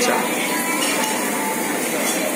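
Busy restaurant room noise: a steady din with dishes and cutlery clinking.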